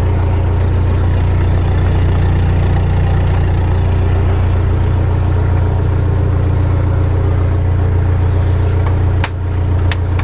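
Narrowboat diesel engine running steadily at low cruising revs, heard from the stern. Near the end the sound briefly dips, with a couple of sharp clicks.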